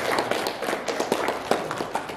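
Audience clapping, thinning out and fading near the end.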